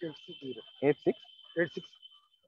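A steady, high-pitched insect call, one thin even tone that runs under a man's speech.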